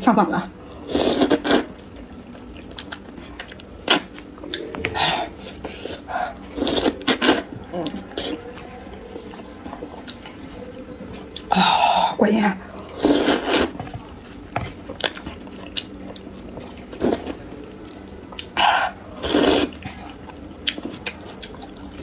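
Close-miked slurping and chewing of thick spicy noodles, in short wet bursts at uneven intervals with quieter chewing between.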